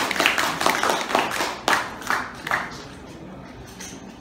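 Audience applauding, the clapping thinning out and dying away after about two and a half seconds.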